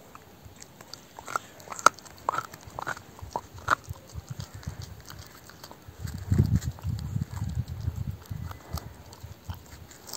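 A dog chewing raw beef brisket on the bone: a run of sharp cracks in the first few seconds, then dense, steady crunching from about six seconds in as it works the bone.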